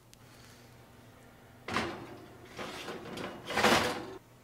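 Oven door opened and the wire oven rack slid as the pizza crust is put in to bake. There is a sudden sliding scrape about two seconds in and a louder one near the end.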